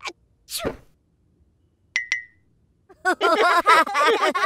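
A cartoon toddler blows a single puff of breath to blow out birthday-cake candles, heard as a short falling whoosh about half a second in. Two quick clicks follow near the middle. From about three seconds a voice comes in with a wavering pitch.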